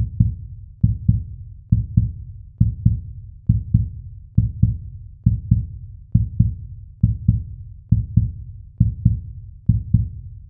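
Heartbeat sound effect: low double thumps, lub-dub, repeating steadily a little faster than once a second.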